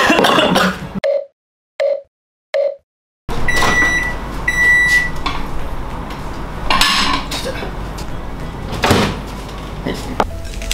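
Microwave oven signalling the end of its heating cycle with two long, high beeps about a second apart. A few seconds later its door clunks open, with another knock near the end. Earlier, three short soft tones sound in otherwise dead silence.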